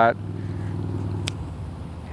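A steady low motor hum, with a single sharp click about a second and a quarter in.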